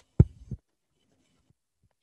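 Two dull taps about a third of a second apart, like a stylus striking a tablet screen while handwriting, with a faint third tap later.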